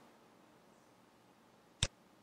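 A single sharp computer mouse click near the end, clicking a button on screen; otherwise near silence.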